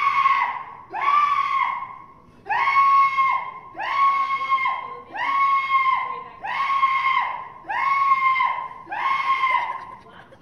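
A person screaming over and over: about eight long, high-pitched screams on the same note, each under a second, repeated a little over a second apart.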